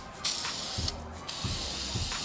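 Aerosol can of gray spray paint spraying onto a foam block in a steady hiss, broken briefly near the start and again about a second in.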